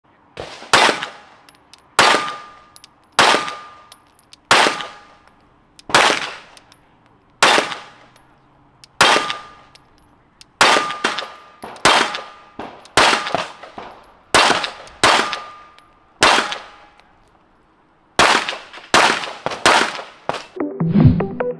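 About seventeen 9mm pistol shots from a Glock 19 Gen 4 fitted with a Radian Ramjet + Afterburner compensator. The shots are single and spaced about a second and a half apart at first, then come in quicker strings of two or three, with a pause near the end before a fast final string. A brief ringing tone follows many of the shots.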